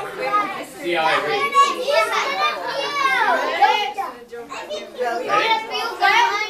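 A group of children's voices shouting and squealing over one another with excitement. About three seconds in, one high voice slides sharply down in pitch.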